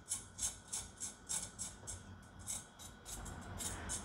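Whole chicken sizzling in a hot air fryer basket: a quick, faint run of crackles and pops from the hot fat and skin, several a second.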